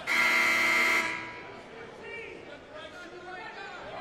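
Basketball arena horn sounding once, a steady buzzing blare lasting about a second, typically the horn that signals a substitution. After it, a quieter murmur of voices in the hall.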